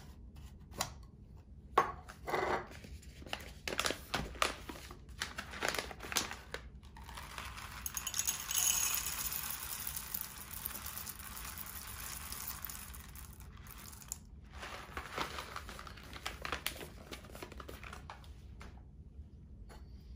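Whole coffee beans poured from a coffee bag into an electric coffee grinder, a steady patter for about five seconds in the middle. Before and after it, the bag crinkles and the grinder's plastic lid clicks as it is handled.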